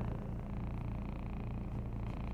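Steady low hum inside a vehicle's cabin during a pause in talk.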